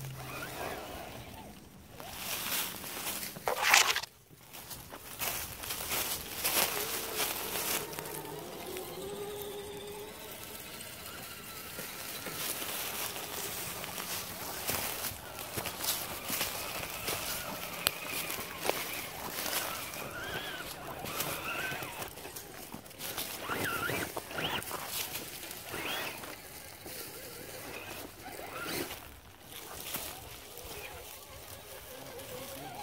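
Dry leaves and twigs rustling and crunching under a small RC rock crawler's tyres and the footsteps of someone walking alongside it, with scattered clicks and knocks. A single loud knock comes just before four seconds in.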